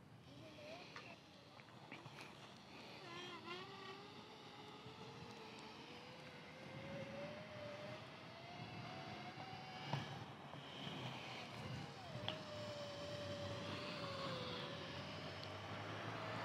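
Electric drive motors of a DIY electric inline skate whining faintly under throttle, the pitch climbing slowly as the skater speeds up, dipping about three-quarters of the way through and then holding steady. A couple of light knocks from the wheels on the path come near the dip.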